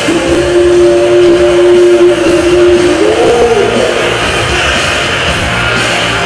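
Loud dance music playing, with one long held note that rises in pitch about three seconds in.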